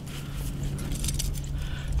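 Light metallic clinking and rattling of a set 220 body-grip trap's steel frame, springs and trigger wires being handled and turned by gloved hands.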